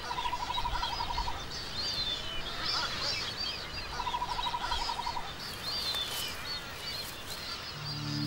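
Wild birds calling: many short, high chirps repeated throughout, with two rapid trills of about a second each, one at the start and one about four seconds in.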